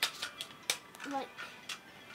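Several sharp clicks and taps of hard plastic toy parts being moved and snapped into position on a toy aircraft.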